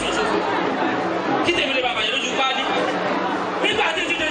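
Several men's voices talking over one another through handheld microphones and a PA, continuous and steady, with the echo of a large hall.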